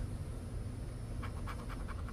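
Poker-chip-style scratcher rubbing the coating off a scratch-off lottery ticket, a few faint short strokes after about a second, over a steady low hum.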